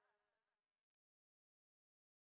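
Near silence: the last faint tail of a song fades out within the first second, then complete silence.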